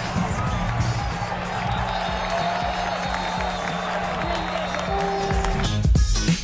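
Football stadium crowd noise, a steady hubbub of many voices, with music playing over the stadium's loudspeakers.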